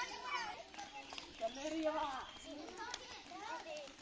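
Children playing, their voices calling and chattering faintly over one another, several at once.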